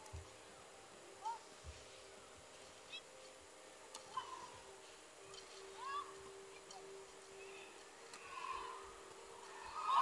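Badminton rally in an arena: sharp taps of rackets striking the shuttlecock, with short rising squeaks of court shoes on the synthetic court mat as the players move. Crowd noise swells up at the very end.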